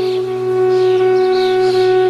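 Bansuri (Indian bamboo flute) holding one long, steady note over a low sustained drone.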